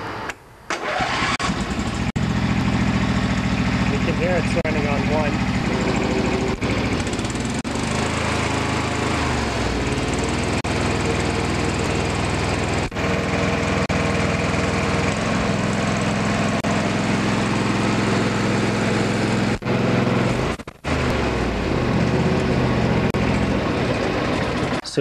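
Briggs & Stratton twin-cylinder lawn tractor engine starting about a second in and running steadily, its note shifting partway through. Near the end the sound dips briefly and the engine keeps running: a failed ignition-kill diode, which makes the engine hard to turn off and leaves it on one cylinder when the kill wire is connected.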